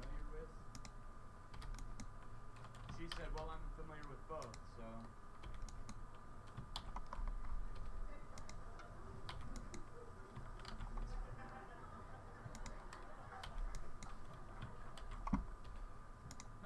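Computer keyboard keys clicking irregularly, a few at a time with short pauses, over a faint steady hum.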